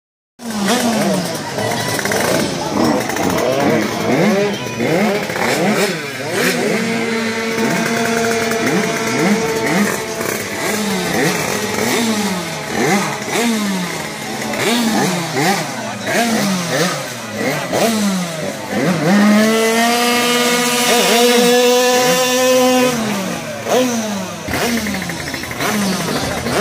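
Tuned two-stroke racing scooter engines being revved hard, over and over. The pitch jumps up in quick blips about once a second, and twice it is held at high revs for a few seconds.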